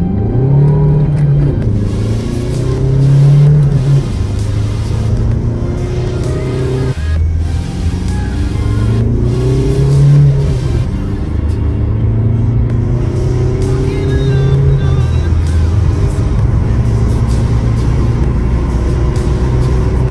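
Tuned Seat Leon 1M 1.9 TDI (ARL) four-cylinder diesel accelerating hard, heard from inside the cabin. The revs climb and drop back at each upshift, several times over, with music underneath.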